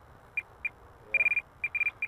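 About six short, high electronic beeps from a radio-control transmitter, one of them longer, as its switches are flipped to turn the model jet's thrust vectoring off for landing.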